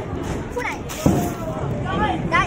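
Background voices and hubbub in a bowling alley, with one sharp thud about halfway through.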